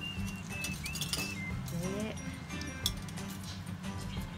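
Background music with a high, whistle-like melody of short held notes that slide up at their starts, and a short sliding vocal about two seconds in.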